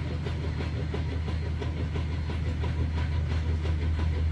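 A steady low mechanical hum with a faint, fast, even clatter over it.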